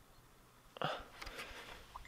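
A single short breath-like vocal sound from a man, a little under a second in, against faint background quiet.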